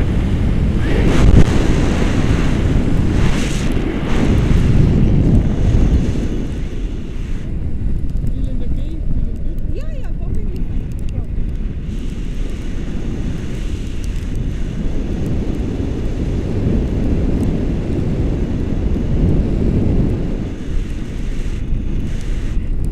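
Airflow buffeting the microphone of a camera carried in flight under a tandem paraglider: a loud, steady low rumble of wind. It is strongest in the first few seconds, eases off in the middle and picks up again near the end.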